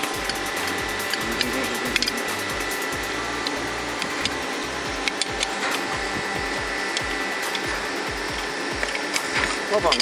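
A steady mechanical hum runs throughout, with a few sharp metal clicks as a pipe wrench works a seized pipe stub loose from the thread of a heated cast-iron valve.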